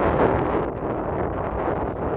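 Wind buffeting the microphone, a dull rushing rumble that is strongest in a gust right at the start.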